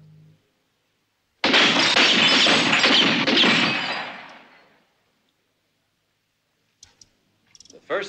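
A rapid string of revolver shots with glass bottles shattering, starting suddenly about a second and a half in and dying away after about three seconds. A few faint clicks follow near the end.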